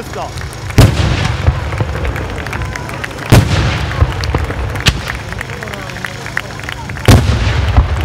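Daytime Sanseverese-style fireworks battery: three heavy booms from aerial bombs, about a second in, a third of the way through and near the end, each followed by a long rolling rumble, with scattered smaller cracks and pops between them.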